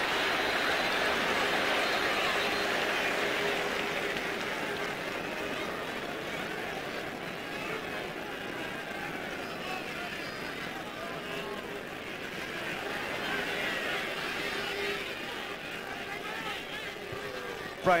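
Gaelic football stadium crowd: a steady din of many voices with scattered shouts, loudest at the start, easing, then swelling again about two-thirds of the way through.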